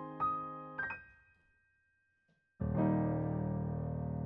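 Digital piano: two last melody notes fade out to near silence, then about two and a half seconds in a full low chord is struck and held, ringing on as it slowly dies away as the closing chord of the song.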